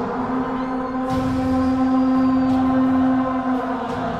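Film score opening on sustained held chords, one low note held for about three and a half seconds, with a few sharp sound effects left over from the film's soundtrack breaking in over it.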